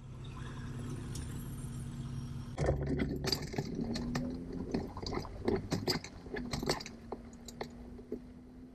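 A vehicle's engine running at low speed with a steady hum. From about two and a half seconds in, a run of sharp clicks and rattles lasts about four seconds, then the hum carries on alone.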